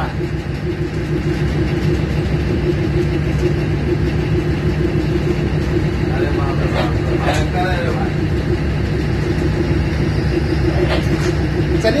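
Locomotive engine running steadily, heard from inside the cab: a constant low hum with two steady low tones. Voices speak briefly a few times.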